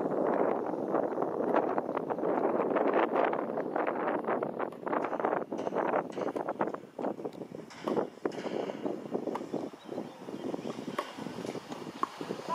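Wind buffeting the microphone: a rough, fluttering rush that is heavy for the first half and turns patchier and gustier in the second half.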